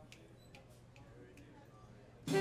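Near silence: room tone with faint, irregular clicks, a few a second, and one or two soft, short low notes.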